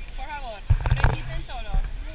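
People talking: a woman's voice and high girls' voices close by. About two-thirds of a second in comes a brief low thump, the loudest moment.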